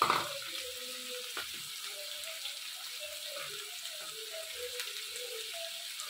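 Sliced onions and green chillies sizzling in oil in a pan, a steady frying hiss with small bubbling pops, with a brief louder rush at the very start.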